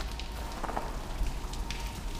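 Melting snow dripping from the building: scattered drips over a steady hiss of running water.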